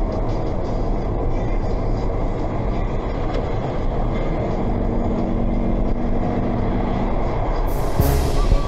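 Road noise inside a car cruising on a dual carriageway: a steady rumble of tyres and engine. A faint low hum joins about halfway through and stops about a second before the end.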